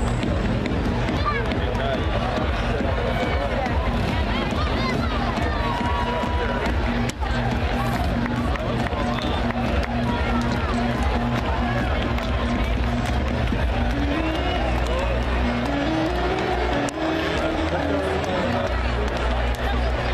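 Many people chattering in stadium stands, with music playing over the stadium loudspeakers; a stepping melody line comes in about two-thirds of the way through.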